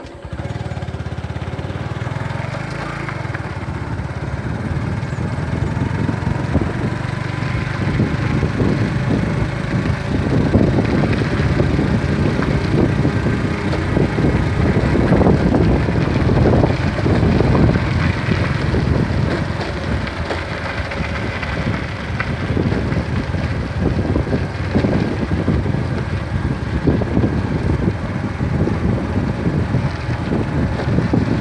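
Motorcycle engine coming in abruptly and running as the bike rides along, with wind noise on the microphone growing louder from about ten seconds in.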